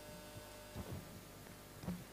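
Faint steady electrical hum from the hall's sound system, with a few soft low thumps: one pair about a second in and another near the end.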